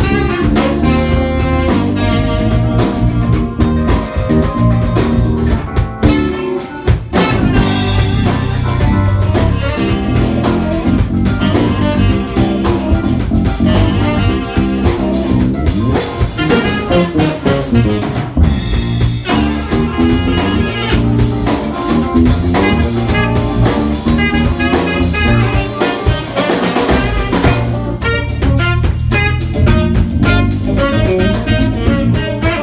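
Small jazz band playing live: tenor saxophone over guitar, bass guitar, drum kit and piano.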